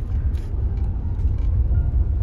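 Low, steady rumble of a Suzuki car heard from inside the cabin as it drives slowly over a rough, bumpy road: tyre and engine noise with uneven jolts.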